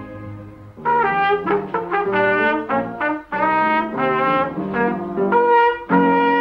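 A boy learner's trumpet playing a simple tune in separate, detached notes, about three a second, starting about a second in. Before it, a held chord dies away.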